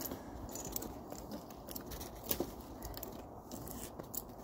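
Scattered clicks, scrapes and crunches of a tree climber working on the trunk in steel climbing spurs while handling his rope lanyard and its hardware. One sharper crack comes a little past halfway.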